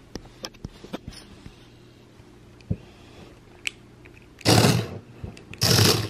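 HexBug Fire Ant robot toy driven by remote, scuttling across a tabletop in two short loud bursts of about half a second each near the end, its small motor whirring and plastic legs clattering. A few faint clicks come before.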